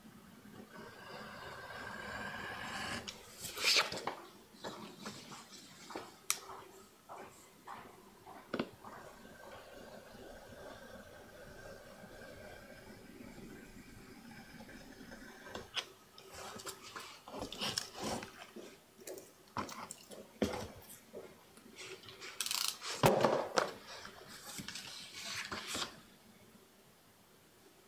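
Utility knife with a snap-off blade cutting through a paper sheet along a straightedge on a wooden table, with the paper being handled and slid about. Several sharp clicks and knocks are scattered through it, with a louder scrape and rustle a few seconds before the end.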